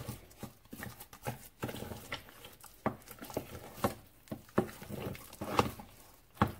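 Wooden spoon knocking and scraping against a stainless steel saucepan as raw eggs are beaten into thick choux paste, with irregular knocks about every half second.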